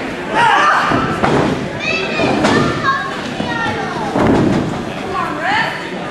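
High-pitched shouting and yelling from a crowd with many children's voices, broken by thuds of bodies landing on the wrestling-ring mat.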